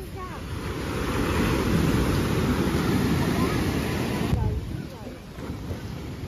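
Heavy surf breaking on the beach: a rushing wash of waves that swells over the first couple of seconds, holds, then drops away sharply a little past four seconds in, with wind buffeting the microphone.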